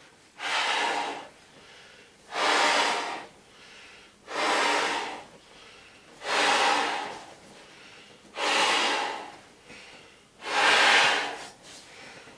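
A person breathing heavily in a steady rhythm: six loud breaths, each about a second long, coming about every two seconds.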